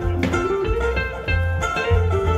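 Live bluegrass-style string band playing an instrumental passage: plucked double bass notes under mandolin and electric guitar.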